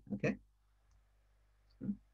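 A man says "okay" over a video-call microphone. After that there is quiet room tone with a couple of faint small clicks and a brief vocal sound near the end.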